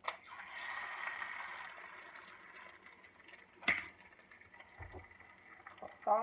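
An egg cracked onto the hot plate of a preheated Nostalgia MyMini electric griddle: a sharp crack, then the egg sizzling, loudest at first and slowly fading. A single sharp knock comes a little past halfway.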